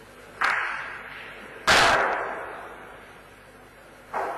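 Two sharp knocks of bochas balls, a lighter one about half a second in and a louder crack just under two seconds in, each ringing out with a long echo.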